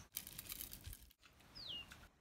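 Faint crackling and rustling, then near the end a single short bird chirp that slides down in pitch.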